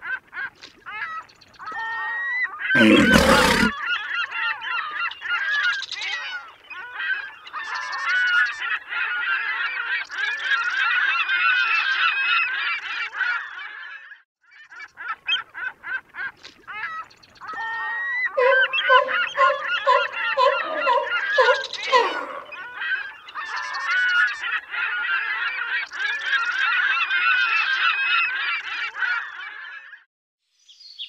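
A flock of waterbirds calling, many overlapping calls at once, with a short break about halfway through. A brief loud rushing burst comes about three seconds in.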